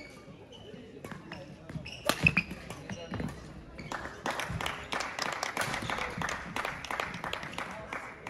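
Badminton hall ambience: a murmur of distant voices with many scattered sharp knocks and taps on the court floor, the loudest about two seconds in and a busier run of them in the second half.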